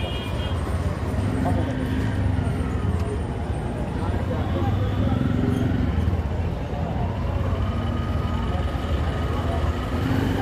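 Busy street traffic with a steady low rumble of engines and voices of people nearby, over the tapping of a knife chopping green chillies and herbs on a small wooden board.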